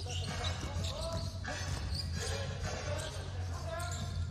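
Court sound at a basketball game: a ball being dribbled, with players' voices calling out faintly in the big hall, over a low steady hum.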